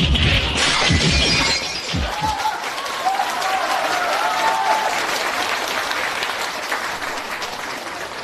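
Studio audience applauding and laughing, a dense steady clatter of clapping, with low thumps in the first two seconds.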